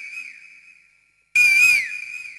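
Asian koel call: a clear, whistled note that wavers and then drops in pitch, followed by a long echo. The echo of one call fades out early on, and a second call starts about a second and a half in.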